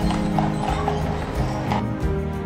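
Hooves of a pair of carriage horses clip-clopping at a walk on a paved street, a scatter of sharp knocks, under background music with sustained tones.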